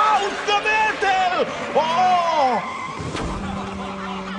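Men's wordless, alarmed cries mixed with squealing race-car tyres skidding on a slippery track. About three seconds in comes a click, then a steady low hum.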